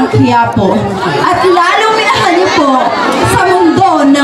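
Speech: a voice talking through a microphone and PA in a large hall, with crowd chatter behind it.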